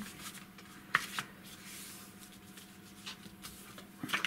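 Card stock being folded and creased by hand: paper rustling and rubbing, with a sharp tick about a second in.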